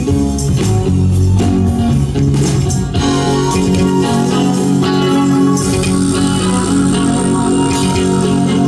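Live rock band playing an instrumental passage: electric guitar over bass and drums. A bright high shimmer joins a little past halfway.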